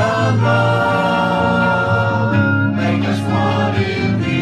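A group of voices singing a worship song together, holding long notes, with acoustic guitar and violin accompanying.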